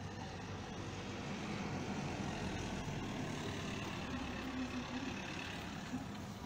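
A vehicle engine running, a steady low rumble with a faint hum that grows a little louder after the first second or two and eases near the end.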